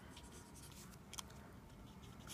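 Faint scratching of a mechanical pencil drawing short strokes on paper, with a light tick just over a second in.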